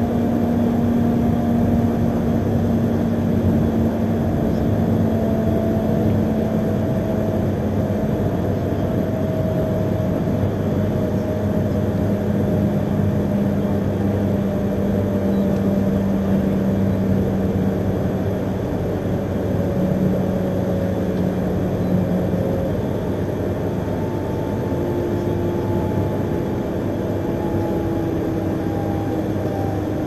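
Running noise of an Akita Shinkansen E3-series train heard inside the passenger cabin: a steady rumble of wheels on rail with a low motor hum whose pitch sinks slowly, as the train slows for a stop.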